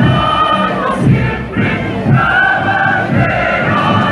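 Many voices singing together in chorus, holding long sustained notes.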